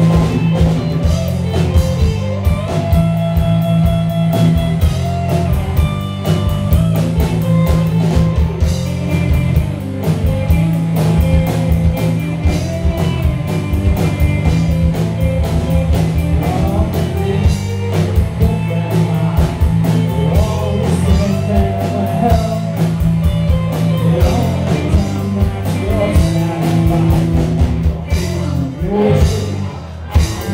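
Live rock band playing: electric guitars, bass guitar and a drum kit keeping a steady beat, loud.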